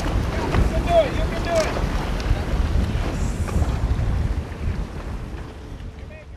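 Wind buffeting the microphone and sea noise from aboard a boat on open water, with a steady low rumble, fading out near the end.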